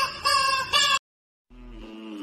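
Chicken-like clucking squawks in quick pitched bursts for about a second, cut off abruptly. After a brief silence a low outro music swell begins, rising in level.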